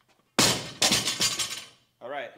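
Loaded barbell with bumper plates dropped onto a gym floor: a heavy impact about half a second in, then a couple of bounces with the plates clattering on the sleeves, dying away within about a second.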